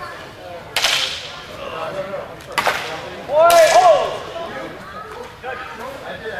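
Two sharp cracks about two seconds apart, then a louder crack with a short shout, over the chatter of a large hall.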